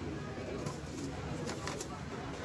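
Store background hubbub with indistinct voices, and a few sharp clicks about one and a half seconds in as metal cans are handled into a plastic shopping basket.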